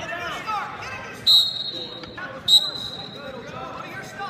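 Wrestling referee's whistle blown twice, two shrill steady blasts about a second apart, each cut off after under a second, over crowd chatter in an arena.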